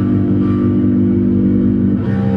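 Electric basses played through effects pedals, holding a steady, sustained drone of low notes over a dense rumble in experimental noise music.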